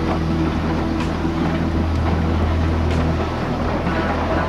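Steam locomotive working slowly, its exhaust beats coming about once a second over a steady noisy bed with held tones.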